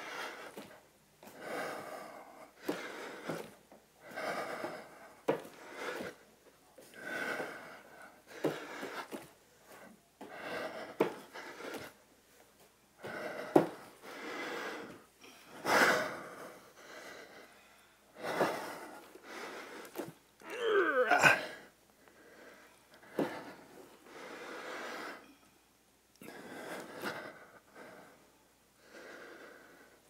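Heavy, forceful exhalations and panting from exertion, a breath roughly every one to two seconds, from two people doing repeated handstand jumps. There are a few short knocks, and one voiced strained groan about two-thirds of the way through.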